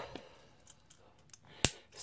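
Small plastic Lego plate snapped onto the studs of a brick model with one sharp click about one and a half seconds in, after a few faint clicks of pieces being handled.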